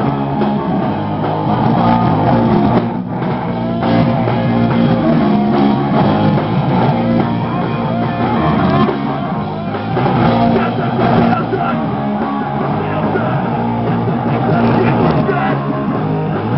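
Live punk rock band playing loud: distorted electric guitars, bass guitar and drum kit, heard through a camcorder microphone.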